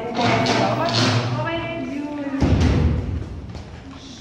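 Indistinct voices with some music in a large room, and one dull low thump about two and a half seconds in, the loudest sound.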